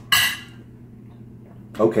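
Metal fork set down on a dinner plate: one short, sharp clink that dies away within half a second.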